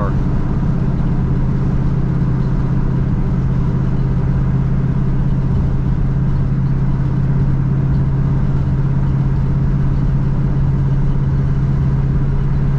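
1968 Chevrolet Camaro's engine and exhaust running steadily while cruising, heard from inside the cabin as an even low drone.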